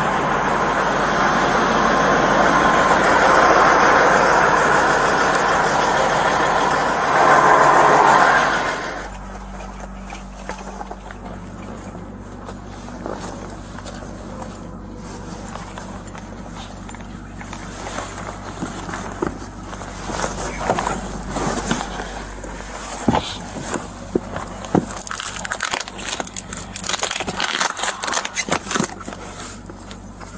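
Loud rush of roadside traffic noise for the first several seconds. Then, inside a semi-truck's sleeper cab, rustling and crinkling of bags, bedding and cardboard being rummaged through in a search, with scattered clicks and knocks over a low steady hum.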